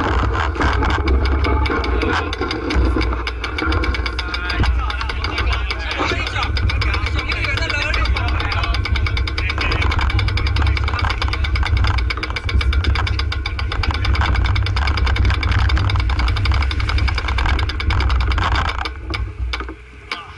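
Wind buffeting the microphone of a camera mounted on a road bicycle, with steady rattling and jolting from the mount as the bike rolls over a rough mountain road.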